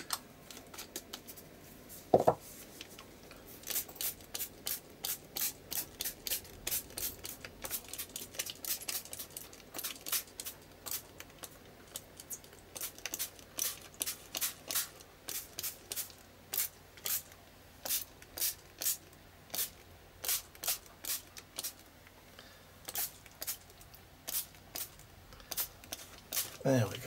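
A small handheld dabber dabbing acrylic paint onto a paper art-journal page: quick soft taps, roughly two a second, in runs, with a single knock about two seconds in.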